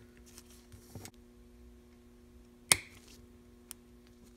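Faint handling of small derailleur parts, then one sharp click about two and a half seconds in as a small retaining clip snaps onto the spring-housing bolt of a Shimano Deore XT M735 rear derailleur.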